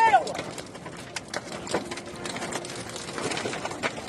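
Tornado wind battering a vehicle, heard from inside the cab: a steady rush of wind noise with scattered sharp knocks as flying debris strikes the body and windscreen.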